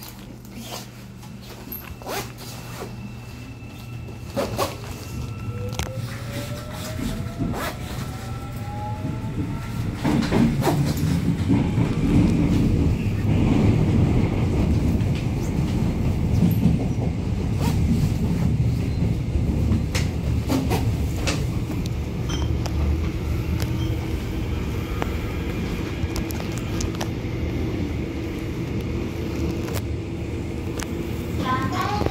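Busan Metro Line 1 electric train heard from inside the car as it pulls away. The traction motors whine, rising in pitch over the first ten seconds or so as it accelerates. From about ten seconds in, a loud, steady rumble of wheels on rails takes over as the train runs at speed.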